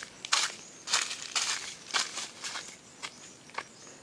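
Footsteps crunching on dry fallen leaves and dirt, about two steps a second, growing lighter near the end.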